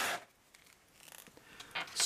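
A brief rubbing rustle as a plastic action figure is handled, fading out within a moment, then quiet with a few faint small clicks of handling.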